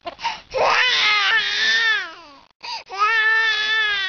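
A baby crying: a few short sobs, then two long wails, the first falling in pitch as it fades.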